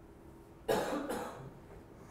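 A person coughing twice in quick succession, about two-thirds of a second in.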